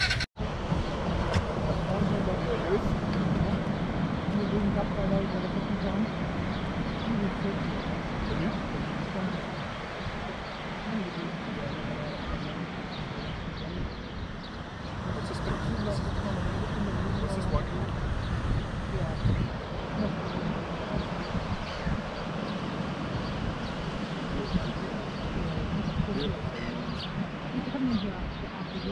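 Indistinct voices talking over steady outdoor background noise, with a brief dropout in the sound just after it begins.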